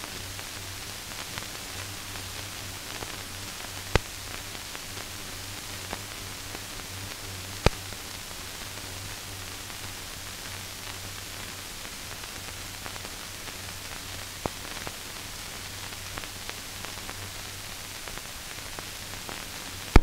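Steady hiss and low hum of an old film soundtrack carrying no programme sound, broken by a few sharp clicks, the loudest about four seconds and about eight seconds in.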